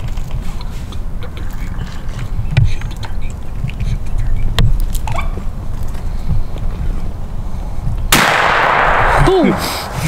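A single shotgun shot at a turkey about eight seconds in, sudden and loud, its noise lingering for about a second, after a stretch of low rumble and faint clicks.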